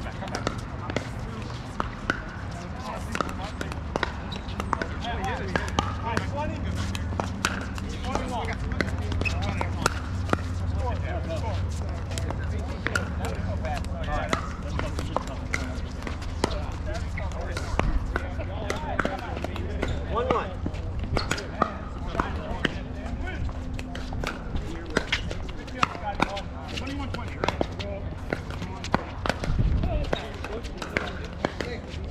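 Pickleball paddles striking plastic pickleballs during rallies on several courts at once: many sharp, irregular pops. Faint voices of players run underneath.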